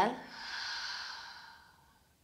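A woman's long, audible exhale through the mouth: a breathy sigh that fades away over about a second and a half, the controlled out-breath of a yoga breathing count.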